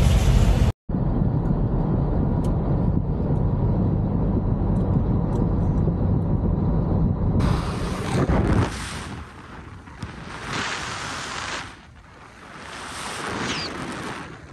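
Car travelling at highway speed: a steady low road-and-engine noise, then after a cut wind rushing over the microphone, swelling and fading in gusts.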